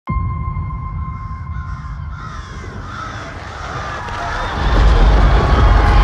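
Cinematic trailer sound design: a high ringing tone fades out over the first two seconds above a low rumble, with a few short calls in between. The rumble swells much louder about four and a half seconds in as the dark wall of shadow bears down.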